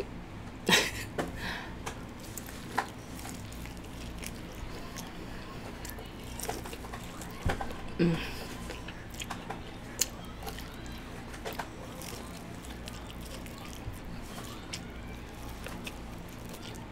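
A person eating close to the microphone, with soft wet chewing and mouth sounds broken by scattered sharp clicks and smacks. There is a brief hum about eight seconds in.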